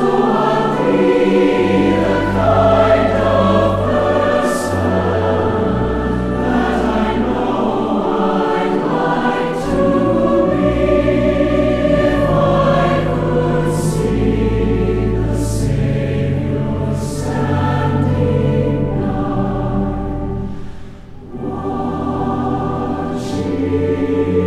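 A large mixed choir of women and men singing a slow hymn in full harmony, over long-held low bass notes. The sound drops briefly between phrases about three seconds before the end.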